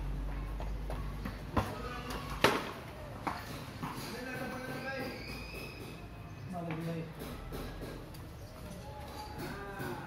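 A ball hitting the stone paving and then the cricket bat: a sharp knock about a second and a half in, a louder crack about a second later, and a smaller knock soon after, with people talking in the background.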